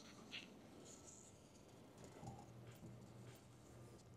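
Near silence, with a few faint scratches of a marker pen on a paper target.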